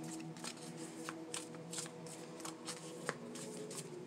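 A deck of round tarot cards shuffled by hand: a quick, uneven run of light card flicks and slides, with one sharper snap about three seconds in.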